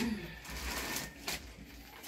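Plastic shopping bag rustling as groceries are taken out, with a couple of light knocks as items are set down, one at the start and one about a second and a half later.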